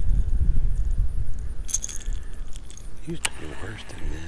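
Metallic clinking and jingling of a lipless crankbait's treble hooks and rattle as it is handled, with a sharp click shortly before the end, over a steady low rumble of wind on the microphone.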